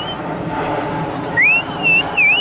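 A loud whistle sliding up in pitch: once right at the start, then again about a second and a half in, rising and then holding its note, over steady outdoor background noise.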